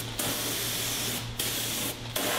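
Air-powered cartridge spray gun hissing as it sprays a coating onto a car body panel, the trigger let off briefly about a second and a quarter in before spraying resumes.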